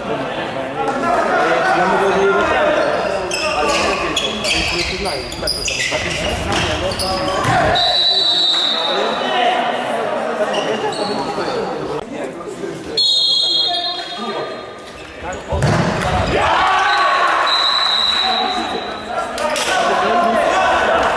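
Indoor futsal play on a hard hall court: the ball kicked and bouncing, with players' voices shouting in the echoing hall. A few short high-pitched tones sound three times, about 8, 13 and 17 seconds in.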